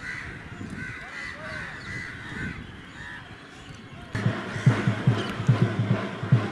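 Quiet outdoor background with a few short, faint calls, then about four seconds in a louder, fast and steady low drumbeat starts.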